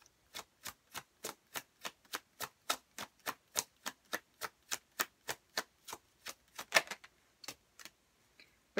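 A deck of tarot cards being shuffled by hand, overhand: a steady run of crisp card slaps, about three or four a second, thinning out to a couple of last slaps near the end.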